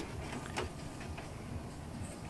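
Quiet room noise with a few faint clicks and knocks from the camcorder being handled as it moves.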